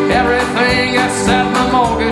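Live Americana band playing an instrumental passage: a fiddle melody over strummed acoustic guitars with a steady beat.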